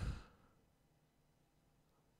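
A man's voice trailing off in a soft breath out during the first half-second, then near silence.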